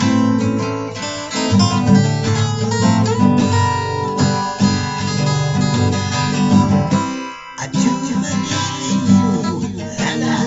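Acoustic guitar strummed in an instrumental passage of a rock song cover, with a brief break in the playing about seven seconds in.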